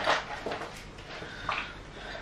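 Sipping iced coffee through a metal straw: a few short sucking sounds.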